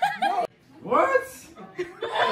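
Chuckling laughter that cuts off abruptly about half a second in, followed by one short burst of voice around the one-second mark.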